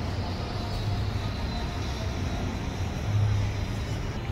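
Traffic on a city street: cars driving past, with a low rumble that swells briefly about three seconds in as a vehicle goes by.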